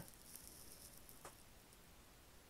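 Near silence: faint room tone with a few soft ticks of paper being handled, the clearest about a second in.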